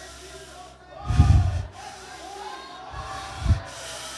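A man's voice through a microphone in two short, unintelligible bursts, one about a second in and a briefer one near the end, over soft background music and faint voices.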